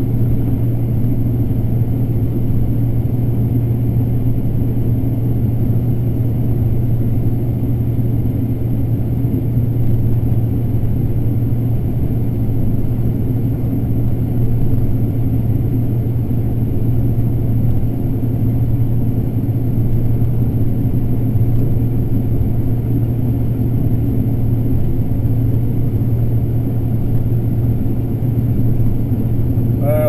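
Combine harvester shelling corn, heard from inside the cab: a steady low drone of the engine and threshing machinery, unchanging throughout.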